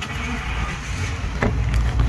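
Steady low rumble of a motor vehicle running nearby, with a brief click about one and a half seconds in.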